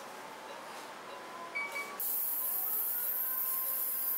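Phacoemulsification machine in the operating theatre: faint steady tones, two short beeps about one and a half seconds in, then a steady high-pitched hiss from about two seconds in as the phaco handpiece works in the eye.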